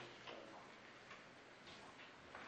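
Near silence: meeting-room tone with a few faint, scattered soft ticks.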